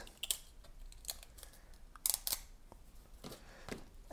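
Faint peeling and handling noises as the orange protective tape is pulled off a black HP 67 ink cartridge: small scattered clicks and rustles, with a short burst of crackling about halfway through.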